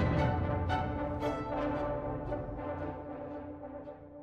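Orchestral music: sustained chords with a few short accents, gradually fading out.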